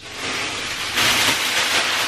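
Plastic shopping bag rustling and crinkling as it is handled, loudest in the second half.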